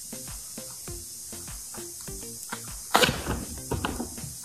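Background music with light handling knocks, then about three seconds in a loud, brief noise as a styrofoam head core is worked free of a hardened resin mold, the vacuum seal already broken.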